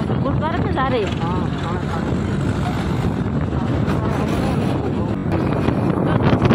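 Steady wind and engine noise from a moving two-wheeler, with some voices in roughly the first second and a half.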